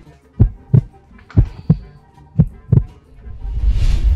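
Heartbeat sound effect in the soundtrack: pairs of low thumps about once a second, then a rising whoosh that swells near the end.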